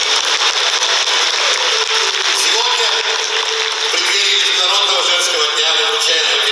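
A voice and music over a hall's sound system, thin and echoing. From about four seconds in, a held, gliding melody comes through more clearly.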